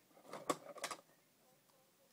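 Two sharp clicks about a third of a second apart as nylon fishing line is worked against a cutter that does not cut it cleanly.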